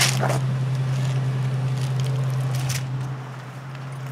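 Steady low hum of an idling car engine, with a few light clicks and rustles of the camera being handled.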